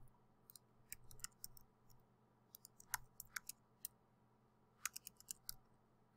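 Faint clicking of computer keyboard keys being typed, in short irregular runs about a second, three seconds and five seconds in.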